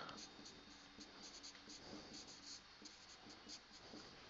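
Faint scratching of a marker pen writing on a whiteboard: many short strokes in quick succession as a line of an equation is written.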